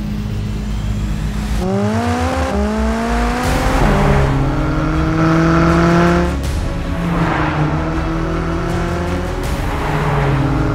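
McLaren Sports Series twin-turbocharged V8 accelerating hard, its pitch climbing and dropping back at two quick upshifts, then holding high revs before easing off, with music underneath.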